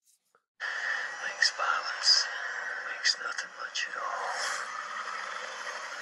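TV trailer soundtrack playing on a computer, thin with no bass: a steady rushing noise with voices and a few short, sharp hits over it. It starts about half a second in.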